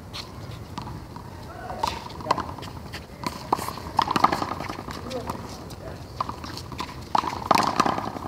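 One-wall handball in play: the ball smacking the concrete wall and court surface at irregular intervals, the hardest hits about four seconds in and near the end, with players' voices calling out between them.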